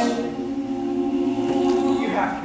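Mixed-voice a cappella choir singing the song's closing chord: the full chord drops back right at the start to a soft, steady held chord in the low voices.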